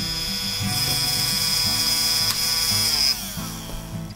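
Small DC drill motor running steadily on 12 V from a bench power supply, with a high whine. Just after three seconds the supply is switched off and the motor winds down, its pitch falling.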